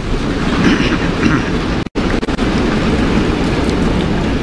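Applause from a large audience, a dense, steady clatter that cuts out for an instant about two seconds in.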